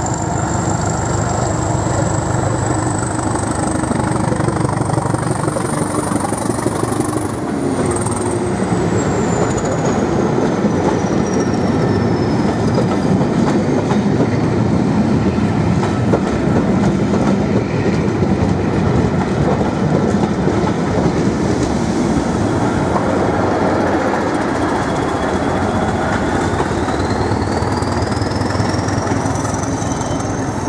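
Hastings Class 202 'Thumper' diesel-electric multiple unit pulling away and running past, its English Electric diesel engine thumping under load over the clatter of the wheels on the rails. A thin high whine rises and then falls about a third of the way in, and rises again near the end.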